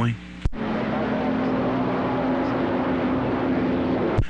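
CB radio receiver hissing with open static between transmissions, a faint steady hum under it. A sharp click about half a second in, as the microphone is released, and another at the end, as it is keyed again.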